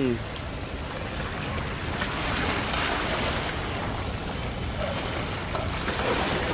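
Wooden purse-seine fishing boat motoring past at close range: a steady low engine rumble mixed with the rushing wash of its bow wave.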